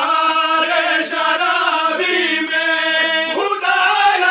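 A group of men chanting an Urdu noha, a mourning lament, together in long drawn-out notes.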